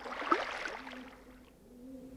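Soft water sounds, gentle lapping and trickling, that fade away over about a second and a half, with a faint low steady hum underneath.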